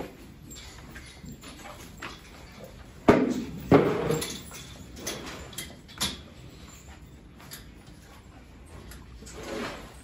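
Two sharp knocks a little over half a second apart, about three seconds in, each trailing off in a short scrape, then a few lighter clicks and knocks, over the low background of a cattle barn.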